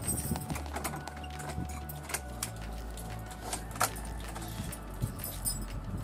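Irregular clicks of footsteps and jangling keys over a steady low rumble.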